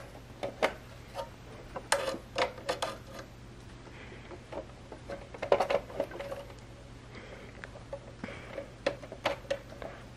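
A screwdriver working the small screws of a receipt printer's metal interface-module bracket, with scattered light clicks and ticks of metal tool on screw and bracket at irregular intervals.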